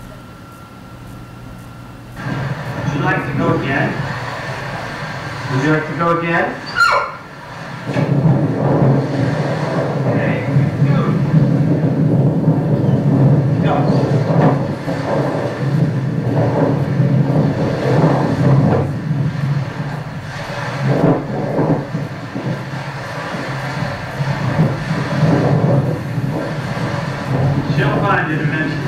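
Soundtrack of a home video played over a room's speakers, starting about two seconds in: music with voice-like sounds that rise and fall in pitch.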